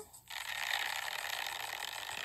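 Urine stream spattering onto dirt and a paper sign: a steady hiss that starts suddenly about a quarter second in.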